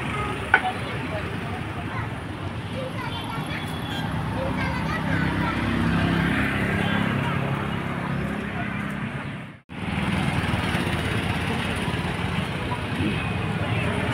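Street traffic noise from motorbikes and cars passing on the road, with indistinct voices mixed in. The sound drops out briefly about ten seconds in.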